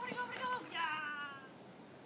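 A border collie giving one high-pitched whine, about a second long, sliding slowly down in pitch.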